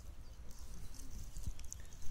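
Faint outdoor background: a steady low rumble on a phone's microphone, with a few soft ticks.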